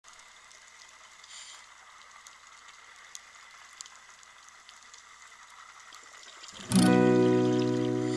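Faint hiss, then near the end an acoustic guitar chord is strummed and left to ring, fading slowly: the opening of a song.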